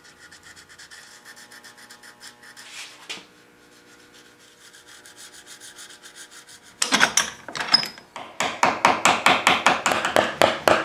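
A steel carving gouge being honed by hand, its edge rubbed back and forth with a rasping scrape. The strokes are faint and quick at first, then about seven seconds in they turn much louder and settle into a steady rhythm of two to three strokes a second.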